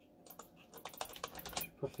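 Computer keyboard keys clicking in a quick, uneven run of light taps, sparse at first and busier from about halfway through.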